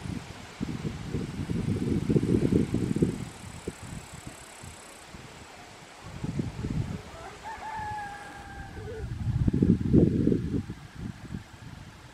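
Gusts of wind buffeting the microphone, rising and falling three times, and a rooster crowing once, a call of about a second, past the middle.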